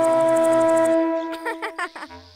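A homemade toy horn blown in one steady, held note, which fades out about a second in and is followed by a few short wavering toots.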